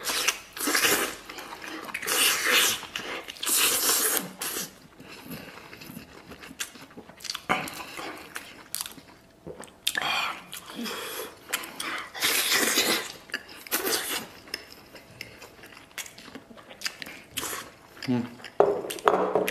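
Close-miked eating: a person biting into braised beef rib meat, tender enough to come off the bone, and chewing it with wet smacking sounds in irregular bursts.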